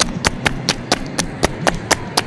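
Quick footsteps close to the microphone, about four sharp steps a second with slightly uneven spacing: someone jogging with the camera.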